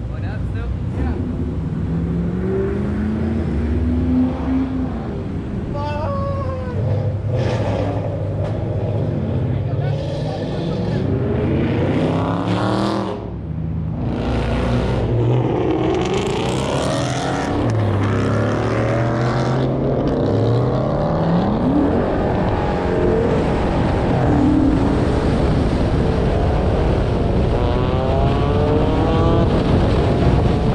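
Car engines accelerating and revving as a group of cars pulls out onto the road, the engine pitch climbing and dropping through gear changes. There is one sharp rev about twenty seconds in, and a steady climb in pitch near the end.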